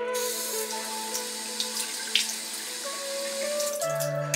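Bathroom sink tap running, water pouring into the basin as a steady hiss that starts abruptly and stops just before the end.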